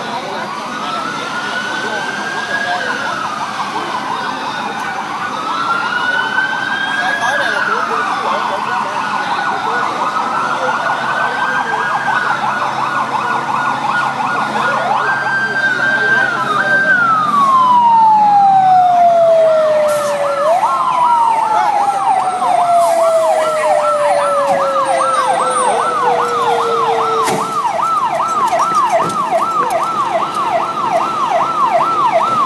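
Several fire engine sirens wailing at once, each rising and falling in slow overlapping sweeps. About halfway through, one holds a steady note and then winds down in two long falling glides, while another switches to a fast warble of about two to three cycles a second.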